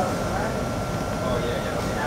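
Steady room hum of an eatery's air-handling and refrigeration equipment, with a thin constant whine running through it. Faint voices can be heard in the background.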